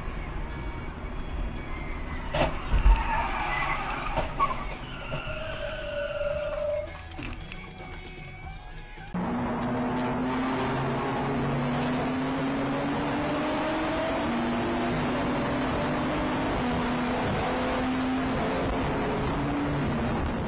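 Dash-cam car crash audio: skidding and a sharp impact about three seconds in, followed by tyre squeal. After a cut, a car engine runs hard at speed in a tunnel as a loud steady drone, its pitch creeping upward.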